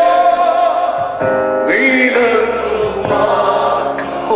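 A group of men singing a Malayalam Christian worship song together into microphones, holding long notes, with a brief break about a second in before the singing picks up again.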